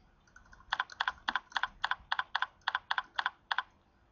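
Computer keyboard typing: about a dozen quick keystrokes at an uneven pace, starting about a second in and stopping shortly before the end.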